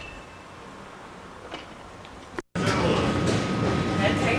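Faint background, then an abrupt break about two and a half seconds in, after which a much louder tram runs, a noisy rumble with a steady high whine.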